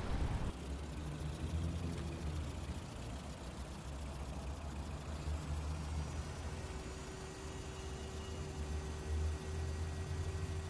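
Car engine idling with a steady low hum. A faint steady tone comes in about six seconds in.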